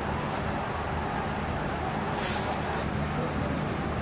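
Tour coach's diesel engine idling with a steady low hum, and a short hiss of compressed air from the bus's air system about halfway through.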